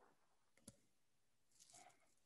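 Near silence, with one faint short click a little under a second in.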